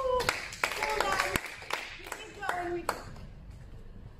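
Scattered hand claps, about six in the first three seconds, mixed with short excited calls from voices; no music is playing.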